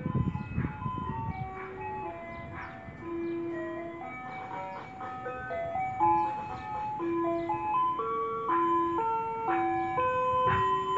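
An ice cream van's loudspeaker playing its electronic chime tune, one note at a time, growing louder as the van approaches. A low rumble sounds under the tune in the first second or so.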